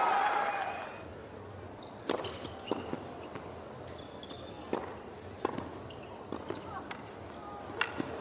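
Tennis ball being struck by rackets and bouncing on a hard court: a string of sharp pops, irregularly spaced, starting about two seconds in, after a burst of voices in the first second.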